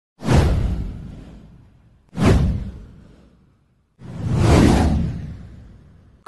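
Three whoosh sound effects for an animated title intro, about two seconds apart, each with a deep hit that fades out over about a second and a half; the first two strike suddenly and the third swells in more gradually.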